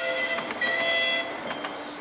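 Horn of a ride-on miniature train sounding a steady chord of several tones for about a second and a half, then dying away. A fainter high tone carries on after it.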